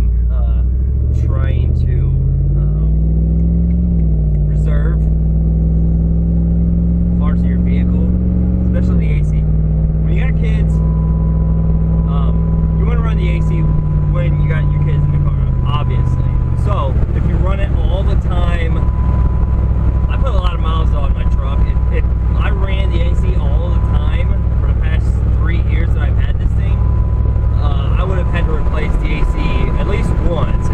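Engine and road noise inside a moving vehicle's cabin. The engine pitch climbs for about four seconds as it accelerates, holds, then drops back about a third of the way in and again about halfway through. A thin steady tone sounds on and off in the second half.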